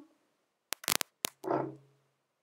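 A few sharp, short clicks in quick succession a little under a second in, followed by a short breathy rush that fades out.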